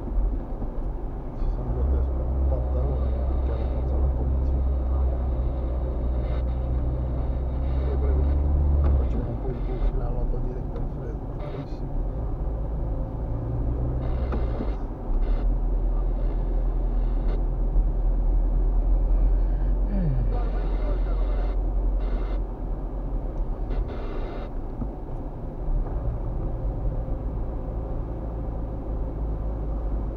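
Steady low engine and road rumble heard from inside a moving car's cabin, with a voice in the background.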